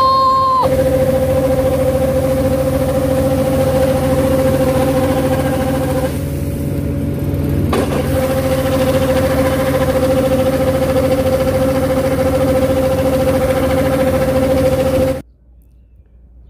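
Combine harvester running steadily with a continuous whine, its unloading auger discharging threshed oats into a bulk bag. The sound thins briefly about six seconds in and cuts off abruptly about a second before the end.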